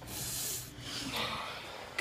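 A short breathy snort through the nose, then a softer breath about a second in.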